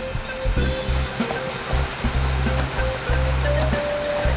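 A knife chopping fresh parsley finely on a cutting board, over background music with a steady low bass line.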